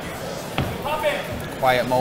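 A single sharp thud from the boxers in the ring about half a second in, over the room noise of the hall, followed by a commentator's voice near the end.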